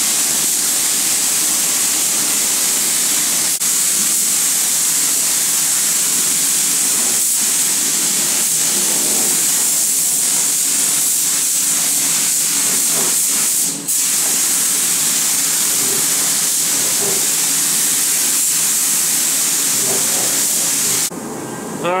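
Gravity-feed automotive spray gun hissing steadily as compressed air atomises clear coat onto the car body. The hiss cuts off near the end.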